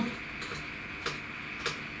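Three faint, sharp clicks about half a second apart, typical of a computer mouse being clicked, over a faint steady high whine.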